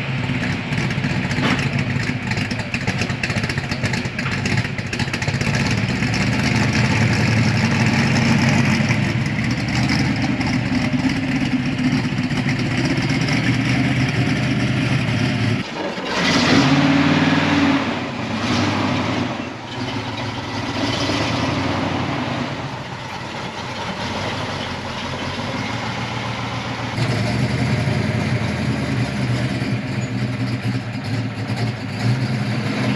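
Classic Ford Mustang V8 engines, a 1970 Boss 302 and a 1969 Mach 1 390 big block, idling. The sound changes abruptly about halfway through, with a louder burst just after the change, and changes again near the end.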